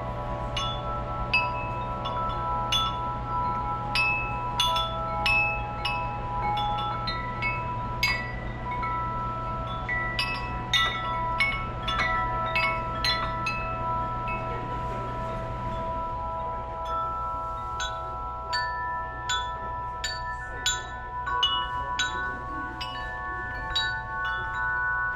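Amish metal-tube wind chimes struck by hand one tube at a time, about one to two clear notes a second, each ringing on under the next. About two-thirds of the way through the set of notes changes and higher notes come in.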